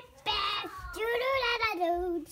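A child singing a few held notes of a short tune, the pitch rising and then falling, ending on a lower note.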